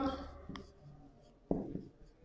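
Marker pen writing on a whiteboard, faint, with a small click about half a second in and a sharper stroke about a second and a half in.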